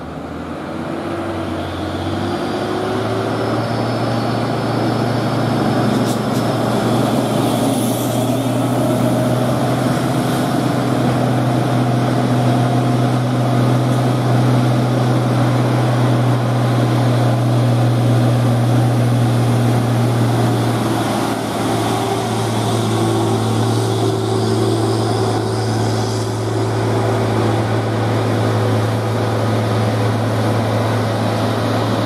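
Heavy diesel trucks running past: a deep, steady engine drone that builds over the first few seconds as a UD Quester GWE330 tractor unit, pulling a wheel loader on a lowboy trailer, comes up close, with a brief dip in the drone about two-thirds of the way through.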